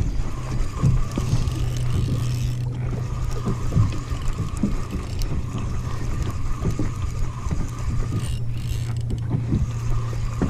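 A spinning reel being cranked steadily to reel in a hooked fish, over a steady low hum, with wind buffeting the microphone in irregular low thumps.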